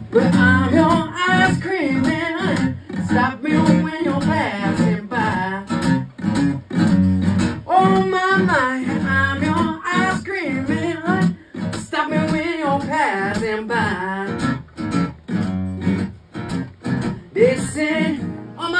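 A live acoustic blues played on acoustic guitar, strummed and picked in a passage without sung words, with bending notes over a steady rhythm.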